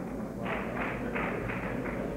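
A series of even, sharp taps, about three a second, over a steady low hum.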